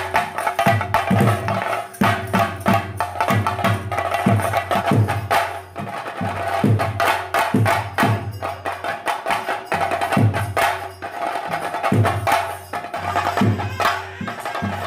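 Live theyyam accompaniment: drums, most likely chenda, beaten in a dense, fast rhythm with deep strokes recurring throughout, over a steady held note from a wind instrument.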